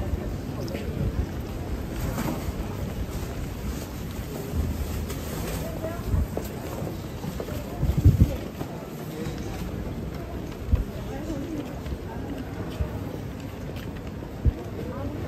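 Busy pedestrian street ambience: passers-by talking indistinctly over a steady low rumble of wind on the microphone. A few short low thumps stand out, the loudest about eight seconds in.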